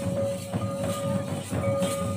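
Santali folk dance music: large double-headed, rope-laced barrel drums (tumdak') beating a dense, continuous rhythm. A held high tone runs over the drums, broken by short gaps twice.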